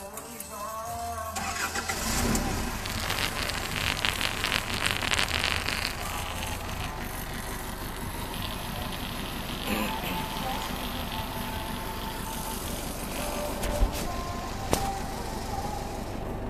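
An old forklift's engine being started: it cranks with a rapid pulsing, catches, then settles into steady idling. Two sharp clicks come near the end.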